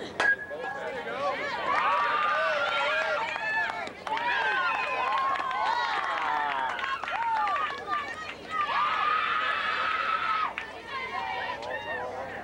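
A softball bat hits the ball with one sharp crack just after the start. High voices then yell and cheer in long, overlapping shouts.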